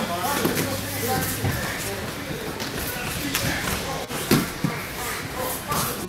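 Jiu-jitsu students grappling on training mats: several dull thuds and shuffles of bodies and bare feet on the mats, the loudest about four seconds in, under laughter and indistinct chatter in the room.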